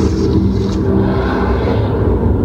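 Loud, dense low drone: several steady low tones under a rumbling noise, the opening of a noise-music track.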